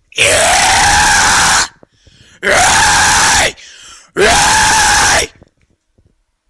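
Three harsh, distorted vocal screams in the extreme-metal style, each lasting a little over a second with short gaps between, unaccompanied by instruments.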